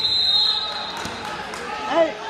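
Voices and shouts in a crowded gymnasium during a wrestling bout, echoing in the hall, with a high steady tone fading in the first half second, a single thump about a second in, and a loud shout near the end.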